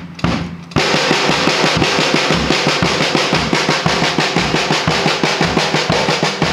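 Drum kit played as a triplet exercise: a few spaced hits, then from about a second in a fast, even run of snare-drum triplets over a kept rim beat.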